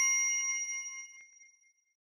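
A bell-chime 'ding' sound effect from a subscribe-button animation, ringing on at several steady pitches and fading away, with a couple of faint clicks. The ring dies out about one and a half seconds in.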